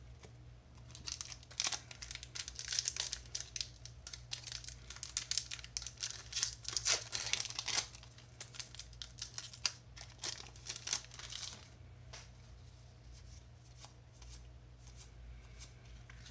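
A foil Magic: The Gathering booster pack wrapper is torn open and crinkled by hand: a dense crackle of tearing and rustling for about ten seconds that dies down to a few faint clicks near the end.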